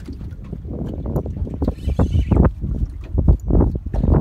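Wind buffeting the microphone and choppy water slapping against a small boat's hull, with irregular low thumps.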